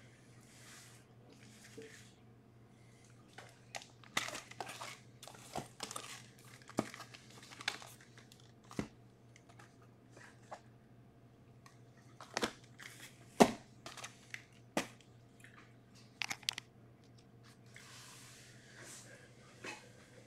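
Shrink-wrapped trading-card boxes being handled and stacked: faint crinkling of plastic wrap with scattered light knocks and taps. The sharpest tap comes about thirteen seconds in.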